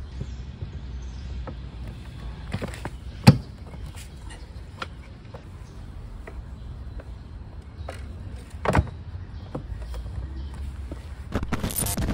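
Hard motorcycle saddlebag being fitted onto its mount and latched by hand: a few scattered clicks and knocks of plastic and metal, the sharpest about three seconds in and another near nine seconds, over a low outdoor rumble. Music comes in near the end.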